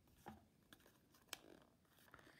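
Near silence, with a few faint clicks of small craft supplies being handled on a tabletop, the sharpest a little after a second in.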